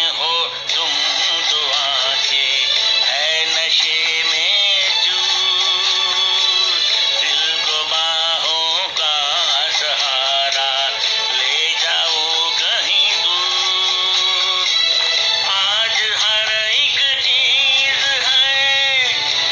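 A song: a singing voice in long, wavering held notes over instrumental backing.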